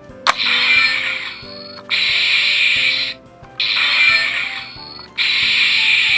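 Legacy Power Morpher toy's electronic sound effect, set off with a click: four bursts of hissing electronic noise, each about a second long, played through its small speaker. It is not the show-accurate morphing sound with a lightning clang. Faint background music plays underneath.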